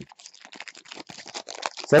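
Foil wrapper of a baseball card pack crinkling in the hands as it is opened: a quick, irregular run of small crackles. A voice starts right at the end.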